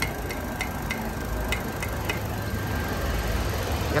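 Steady low rumble of motor traffic, with several light clicks in the first half.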